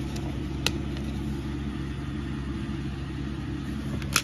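A steady low hum with a single sharp click about two-thirds of a second in, from a plastic DVD case and its discs being handled.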